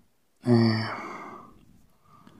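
A man's voiced sigh, starting about half a second in and trailing off over about a second.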